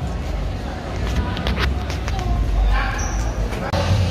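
Indistinct voices over room noise, with a few quick knocks or taps about a second and a half in.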